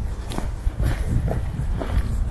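Footsteps of a person walking on an asphalt footpath, about two steps a second, over a steady low rumble.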